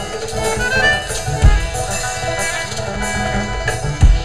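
Live bluegrass-style rock band playing an instrumental passage: banjo and drum kit under sustained notes, with a hard kick-drum hit about one and a half seconds in.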